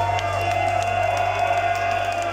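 Live black metal band's amplified guitars and bass holding a sustained note, a steady low drone under a ringing tone, over a cheering crowd at the close of a song.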